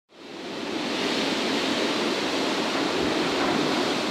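Strong storm wind blowing steadily through conifers and bare trees. It fades in over the first second and then holds as a constant rushing noise.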